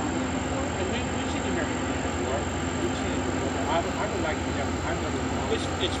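Steady low drone of towboat diesel engines pushing barges, with faint conversation behind it.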